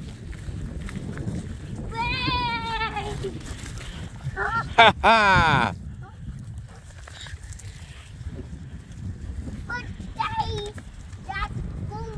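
A toddler's wordless calls: a wavering call about two seconds in, a loud squeal falling in pitch about five seconds in, and short calls near the end. Wind rumbles on the microphone throughout.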